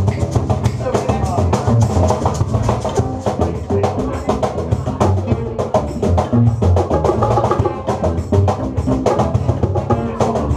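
Live acoustic band playing a Latin groove: upright bass notes under acoustic guitar and violin, with hand percussion keeping a quick clicking rhythm throughout.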